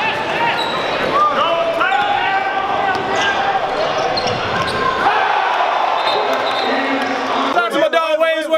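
Basketball game sound in a gym: a ball bouncing on the court amid many crowd voices and shouts. Near the end it cuts to a single loud voice.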